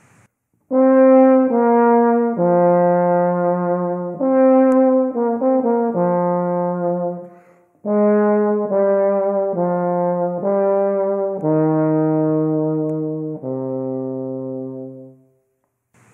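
Solo euphonium playing a slow, loud forte phrase of sustained notes with a full, smooth tone, aiming for no edge or punchy attacks. The notes come in two phrases with a short breath break about halfway, the last note lower and held longest.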